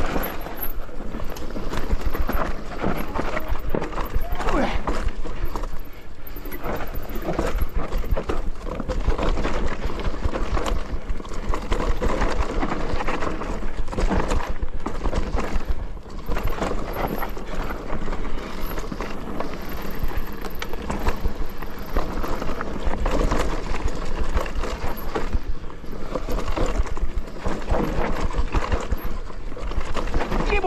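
Mountain bike running down a rough dirt trail: tyres over roots and stones and the bike rattling and clattering in quick, irregular knocks, over a steady low rumble of wind on the microphone.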